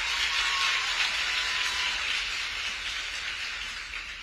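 Audience applauding, slowly dying away near the end.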